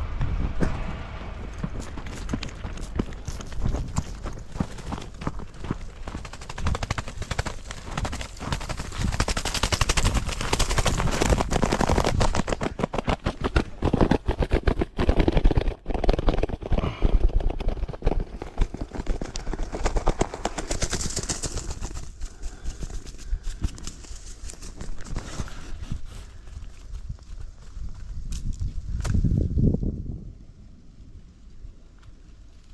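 A wounded grouse flapping its wings hard against the ground in rapid bursts, mixed with hurried footsteps and handling on a dirt trail. It is loudest around the middle.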